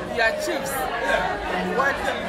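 Speech: a woman talking, with other voices chattering behind her in a large room.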